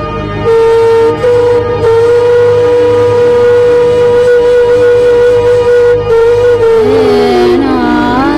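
Background music: one long held note over a steady low drone, sliding down in pitch and then moving in steps near the end.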